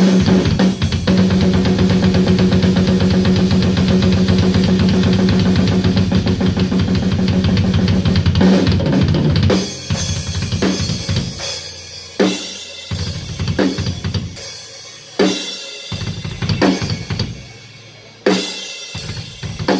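Drum kit played live: fast, continuous playing across drums and cymbals for about the first nine and a half seconds, then it breaks into separate, spaced hits with short pauses between them.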